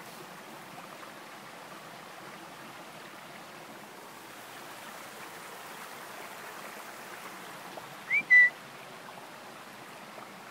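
Steady rushing background noise, then about eight seconds in a short, loud human whistle: a quick rising note followed by a brief held one, a recall whistle to a dog that has run ahead.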